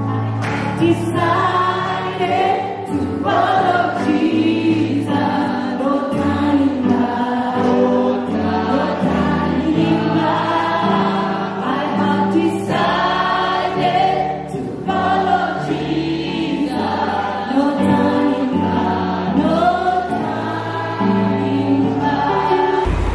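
A choir of men and women singing a gospel song into microphones, over low sustained accompaniment notes that change every second or two.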